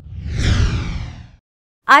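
Whoosh sound effect of a news logo transition: a swoosh sliding down in pitch over a low rumble, fading out after about a second and a half. A woman's voice starts right at the end.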